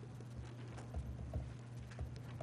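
Faint footsteps, a few soft uneven thuds on a hard floor as someone walks up to the podium, over a steady low hum.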